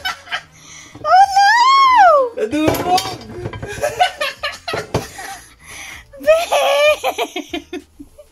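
People laughing: a long, high squeal of laughter that rises and falls about a second in, then a run of quick short laughs near the end, with a few knocks in between.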